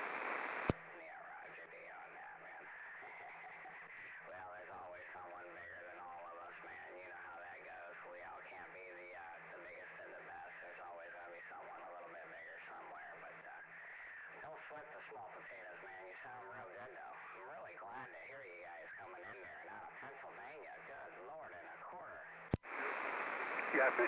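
CB radio receiving on channel 38 lower sideband between transmissions. About a second in, a strong station drops off with a click. Faint, garbled sideband voices and band noise follow until a second click near the end, when a strong signal comes back in.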